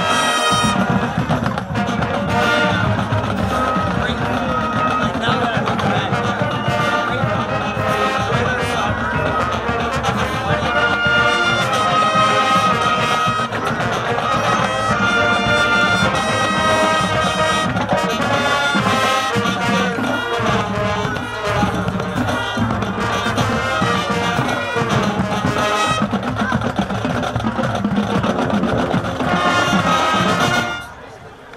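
High school marching band playing a brass-led piece, trumpets and trombones carrying the melody over the low brass.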